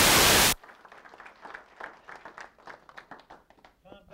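Audience applauding, cut off abruptly about half a second in, followed by faint scattered claps.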